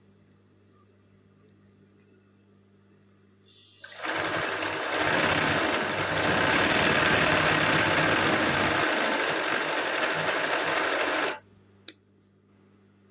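Zigzag sewing machine stitching a satin-stitch embroidery fill, running continuously for about seven seconds from about four seconds in, then stopping abruptly. Before it starts there is only a faint low hum.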